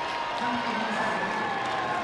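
Basketball arena crowd noise with applause after a made and-one basket, a steady murmur with no loud peaks.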